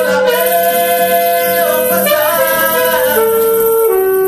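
Ska band playing an acoustic arrangement in rehearsal: a melody of long held notes over the band, stepping down in pitch twice near the end.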